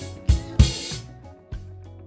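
Gretsch Catalina rock drum kit playing the closing hits of a song over its backing track: bass drum and cymbal strikes in the first second, the last with a cymbal wash. The kit then stops and the backing track carries on more quietly.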